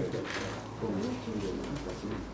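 Low, indistinct murmured speech, with a steady low hum of the room underneath.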